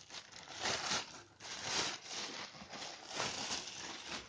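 Clear plastic bag around a motorcycle helmet crinkling in uneven bursts as the wrapped helmet is handled over a cardboard box.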